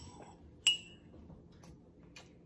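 A small metal spoon clinking once against a ceramic coffee mug about two-thirds of a second in, with a short bright ring, and a fainter tap near the end.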